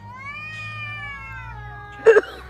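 A cat's long, drawn-out yowl, one continuous call that rises slightly in pitch and then slowly falls, typical of two cats facing off.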